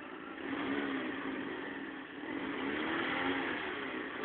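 A parked car's engine revved twice in succession, each rev rising and falling in pitch over the idle.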